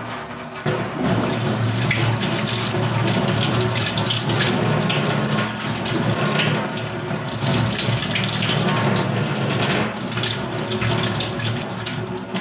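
Kitchen tap running steadily into the sink as something is rinsed under the stream, starting about a second in.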